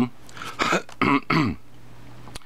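A person clearing their throat in three short bursts within the first second and a half.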